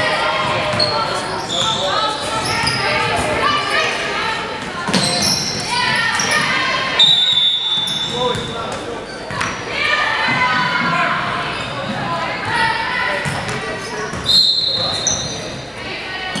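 A basketball being dribbled and bouncing on a hardwood gym floor during play, with players and spectators talking and calling out. The sound echoes in a large gym.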